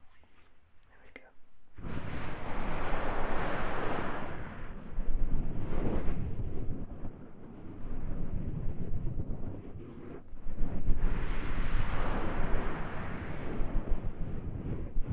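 Hands massaging the ears of a binaural dummy-head microphone, with ear muffs over the ears: loud, close rubbing and rushing friction in swells of a second or two, starting about two seconds in.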